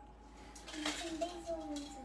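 A child's high voice making one drawn-out, slightly wavering sound that starts about two-thirds of a second in and lasts to the end.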